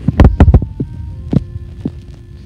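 A quick cluster of dull thumps and knocks in the first half-second, then a few lighter taps, over a faint steady hum: handling noise as toys are moved about on a bedsheet close to the recording phone.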